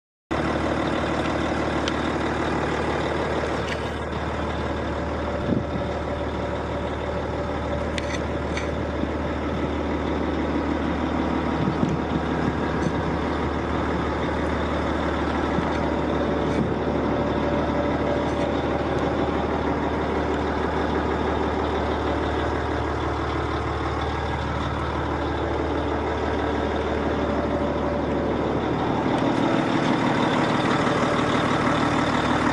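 Volvo L220F wheel loader's diesel engine idling steadily, with a deep, even hum and a few light clicks over it.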